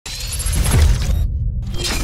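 Podcast intro logo sting: a loud electronic sound effect with a glassy, shattering texture over a deep bass. Its bright upper part cuts out briefly just past a second in, then returns.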